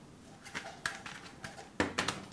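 Plastic CD jewel case being handled and opened: a few light, irregular clicks and taps, with sharper clicks near the end as the case comes open.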